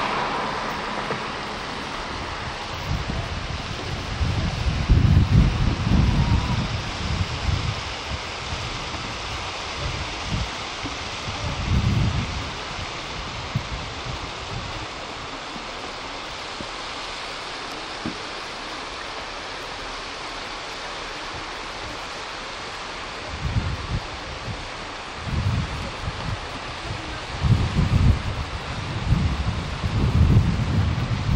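Wind buffeting the camcorder microphone in low rumbling gusts over a steady hiss. The gusts come a few seconds in and again near the middle, then more often towards the end.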